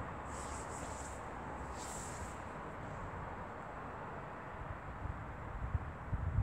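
Steady, low outdoor background noise with no distinct event. There are two brief faint high hisses in the first couple of seconds, and a low rumble starts building near the end.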